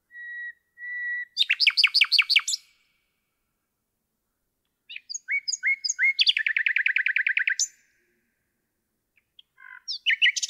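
Common nightingale singing two strophes separated by a pause of about two seconds. The first opens with two steady whistled notes and breaks into a fast run of about eight loud, sharply falling notes. The second starts with a few thin high notes and short rising notes, then a long rapid trill of repeated notes that ends on a single high note; a new strophe begins right at the end.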